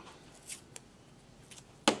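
Artist's tape being handled at the roll, a few light ticks, then a strip torn off with one short sharp rip near the end.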